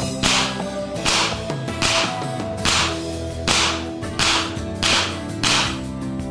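A .22 AirForce Condor air rifle on high-pressure air fires eight sharp shots in quick succession, each a crack with a short fading hiss, coming a little faster towards the end, over background music.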